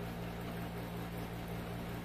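Steady low hum with an even hiss: background room noise, with no distinct sound events.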